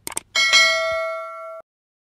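Two quick click sound effects, then a bright notification-bell ding that rings for about a second and cuts off abruptly. This is the sound effect of a subscribe-button and bell animation.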